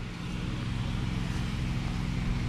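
A motor vehicle's engine running steadily, with a low hum under an even street noise.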